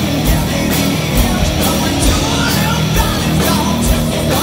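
Glam metal band playing live and loud: distorted electric guitar and bass over a steady kick-drum beat.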